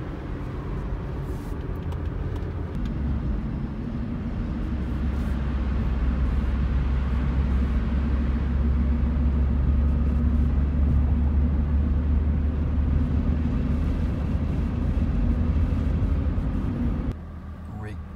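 Car driving, heard from inside the cabin: a steady low engine and road drone that grows louder a few seconds in, then drops off abruptly about a second before the end.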